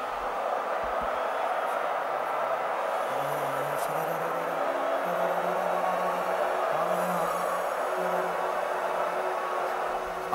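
Soft, sustained keyboard chords whose low notes change every second or two, over a steady, dense murmur.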